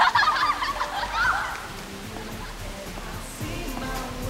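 Girls' laughter for the first second and a half, then quiet background music.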